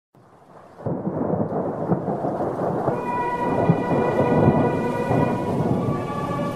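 Rain and thunder sound effect opening a track, starting about a second in, with a sustained musical chord coming in over it about three seconds in.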